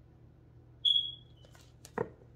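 A single short, high ringing tone, like a small beep or chime, that starts sharply and fades away over about half a second, followed by a faint click and a knock near the end.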